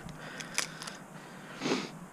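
Light clicks and taps of cleaned Dungeness crab halves being handled and set into a stainless steel strainer basket, over a faint steady hiss, with a brief vocal sound near the end.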